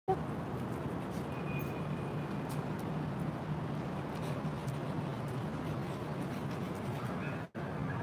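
Steady low hum of distant city traffic, cutting out for an instant near the end.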